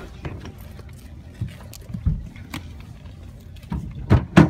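Low, steady rumble inside a car's cabin, with scattered light knocks and rustles from a phone being handled.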